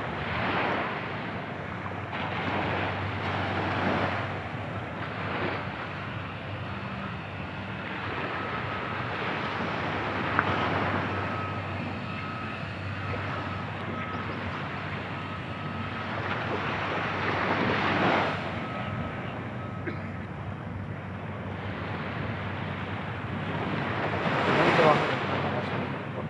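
Small waves washing onto a sandy beach, the sound swelling and falling every second or two, with wind buffeting the microphone.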